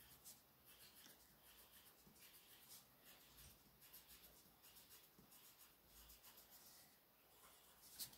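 Faint scratching of a coloured pencil on paper, in many short strokes as small swirls are coloured in.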